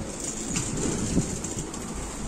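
Outdoor city ambience: a steady low rumble and hiss, with a few faint knocks.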